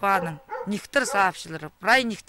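A woman talking.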